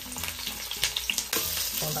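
Sliced scallions sizzling in hot cooking oil in a pot, a steady fizzing with many small crackles and pops.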